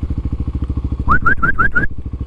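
Kawasaki KLX300 single-cylinder four-stroke engine running at low revs through a stubby aftermarket stainless muffler, a steady rapid exhaust beat. About a second in, five quick rising whistle-like squeaks from a person calling an animal over.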